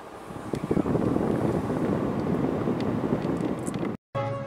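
Car air conditioning blowing cold air out of the dashboard vent, heard as a steady rushing of air on the microphone that swells about a third of a second in and cuts off suddenly at the end.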